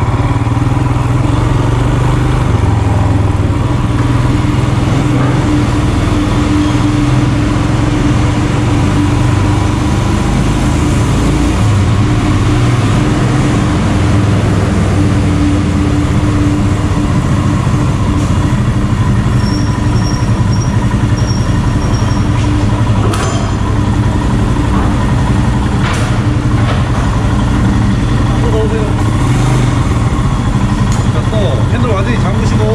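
Royal Enfield Himalayan's 411 cc single-cylinder engine running steadily at low speed while the motorcycle rides onto and along a ferry's car deck. Two sharp knocks come late on.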